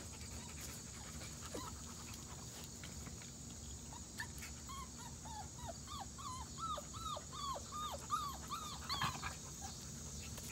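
Nine-week-old beagle puppy whimpering and yipping in excitement: a quick series of short calls that drop in pitch, starting about four seconds in at about three a second and stopping shortly before the end.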